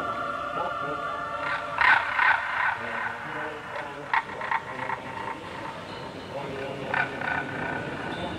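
A quiet, sparse passage of live rock music from the stage. A held chord fades out in the first second or two, then short, irregular bursts of sound come every second or two, the loudest near the two-second mark.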